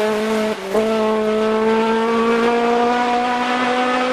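Engine of a race-prepared hatchback hillclimb car held at high revs as it powers out of a bend and away, with a brief dip in the note about half a second in before it picks up again.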